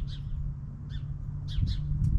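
Small birds chirping in short calls: one at the start, one about a second in and a few close together near the end, over a low steady rumble.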